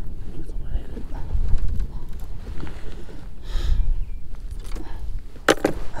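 Wind buffeting the microphone, a steady low rumble that rises and falls, with a brief rustle about halfway through and a few sharp clicks near the end.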